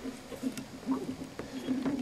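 Fishing reel being cranked in: a faint, uneven whir with a few light clicks.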